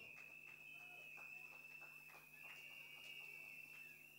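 Near silence: a few faint, scattered hand claps from an audience, over a faint steady high-pitched tone.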